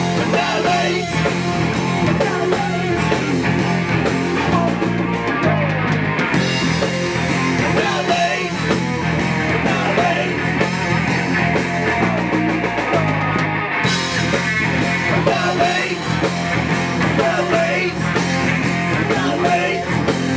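Punk rock band playing live: a singer over electric guitar, bass guitar and drum kit, loud and continuous.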